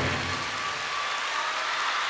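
Concert audience applauding in a hall as the band's final chord fades out.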